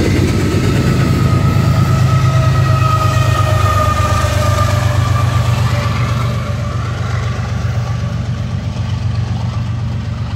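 Diesel locomotive engine rumbling steadily as the train passes, easing somewhat after about six seconds.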